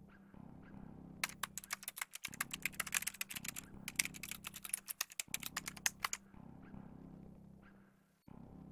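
Typing: rapid, uneven clicking of keys in two runs of a couple of seconds each, separated by a brief pause, over a low steady hum.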